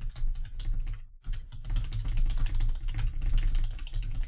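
Fast typing on a computer keyboard: a dense run of keystrokes with a brief pause just after a second in.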